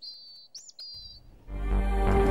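Two high bird chirps, each a quick up-and-down whistle that settles into a held note. Loud music comes in about one and a half seconds in.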